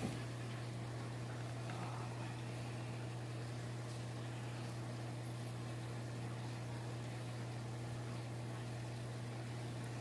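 A steady low hum with a faint even hiss, unchanging throughout; no distinct snips, clicks or knocks stand out.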